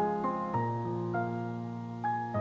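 Background piano music, a few notes struck and left to ring.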